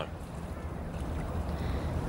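Steady low background rumble, an even ambient noise with no distinct events.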